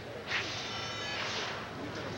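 Figure skate blade scraping across the ice: a hiss with a faint ringing tone in it, lasting just over a second.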